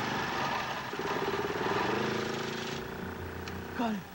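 Riding lawn mower's small engine running loudly and steadily. It drops away suddenly about three seconds in.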